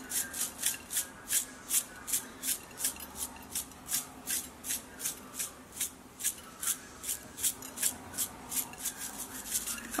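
A spice shaker of chili flakes shaken rapidly over a plate, its contents rattling in short, even strokes at about three a second.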